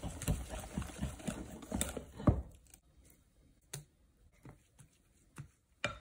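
Wire whisk beating a thick batter in a glass bowl: rapid wet stirring strokes with clinks against the glass for about two and a half seconds, ending in one sharper knock. Then a few separate light clicks.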